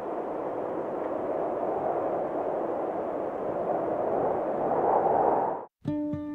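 Rushing wind: a steady noisy rush that swells toward the end and cuts off abruptly, just before ukulele music starts.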